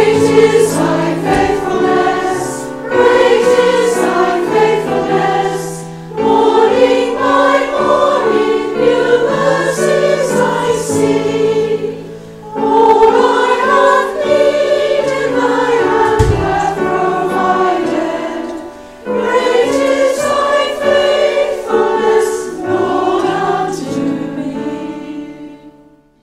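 A congregation of women singing a hymn together from hymn books, over a steady accompaniment. The hymn is sung in lines with brief breaks between them, about every six seconds.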